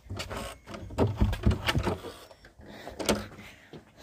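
A run of clicks and knocks from a front door's key lock and metal lever handle as the door is unlocked and opened, busiest about a second in, with one sharp click near three seconds.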